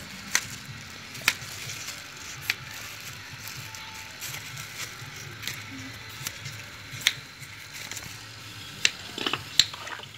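A small knife trimming a raw pig's head: a few sharp clicks and taps spread through, over a low steady background hum.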